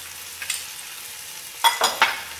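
Chicken and onions sizzling steadily in hot oil in an enameled cast-iron Dutch oven as garlic is spooned in, with a short sharp click about half a second in and a few more near the end.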